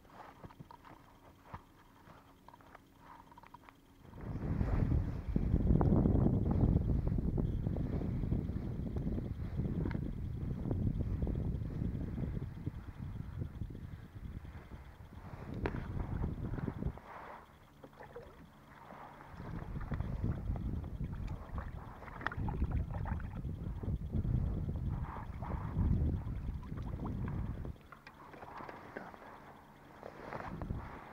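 Wind buffeting the microphone on an open boat: loud, low gusts that start about four seconds in and rise and fall in swells, easing twice.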